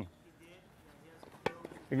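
A tennis ball struck by a racket once, a single sharp pop about one and a half seconds in, with a few faint clicks around it.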